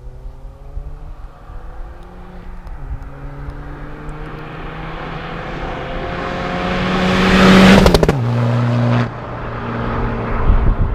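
Heavily tuned Seat Ibiza TDI turbodiesel accelerating hard. The engine note climbs, dips at a gear change about three seconds in, then climbs again, growing louder to a peak near eight seconds. It then drops abruptly to a lower, steadier note.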